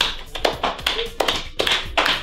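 Hands tapping on a desk in a quick, irregular run of sharp taps, about six a second.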